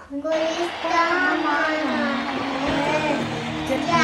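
A small girl singing, in short phrases with some held notes.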